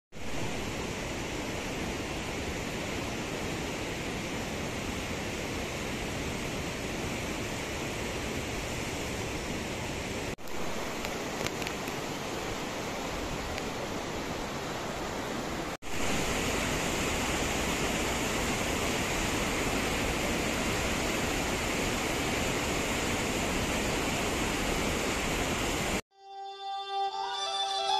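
Steady rush of a fast, rocky mountain stream. The sound breaks off abruptly twice, about ten and sixteen seconds in, and is a little louder after the second break.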